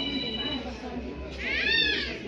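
A cat meowing once near the end, a single call that rises and then falls in pitch.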